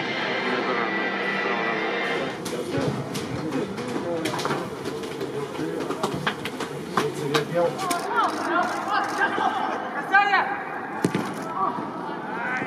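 Music fades out about two seconds in. It gives way to the sound of a football match in a near-empty stadium: players shouting and calling, with scattered sharp knocks.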